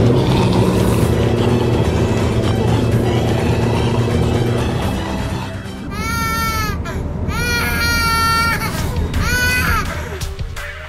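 A car engine running under background music for about five seconds, then four or five high wails that fall at the start and then hold, like a child crying.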